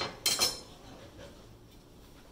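Steel table saw wrenches clinking against the arbor nut and the dado stack as the nut is worked loose: a few sharp metallic clinks with a short ring in the first half second, then faint handling.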